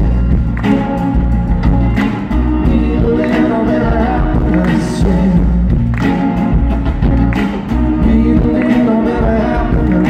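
Live band playing a song: a man singing over a strummed acoustic guitar and an upright double bass, with a steady beat throughout.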